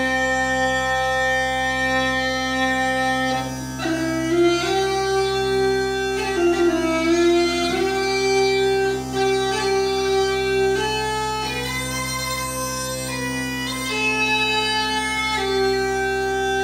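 Uilleann pipes playing a melody on the chanter over a steady drone, with long held notes broken by quicker note changes and ornaments.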